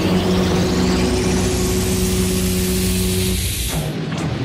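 Electronic theme music with held tones under a long sweep that rises steadily in pitch, cutting off suddenly shortly before the end.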